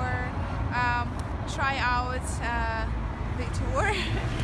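A woman speaking in short phrases over a steady low rumble of city road traffic.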